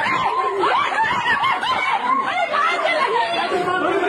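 Agitated voices, with one high-pitched voice giving quick, repeated rising-and-falling cries over the others.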